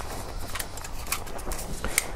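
Light plastic clicks and handling noise from the extendable phone-holder clip of a toy drone's remote controller as it is pulled open and turned in the hand: a few sharp ticks spread through the moment.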